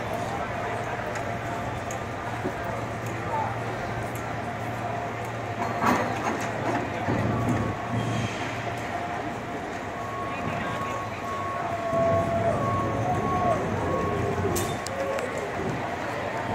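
San Francisco cable car rumbling as it is pushed around by hand on the turntable, with a steady low hum throughout and a sharp clunk about six seconds in. People's voices are mixed in.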